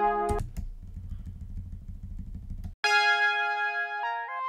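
A sustained choral-synth chord loop playing back while its pitch is shifted in semitone steps. A third of a second in, it drops to a low, grainy, pulsing rumble, and near three seconds in it returns as a higher sustained chord.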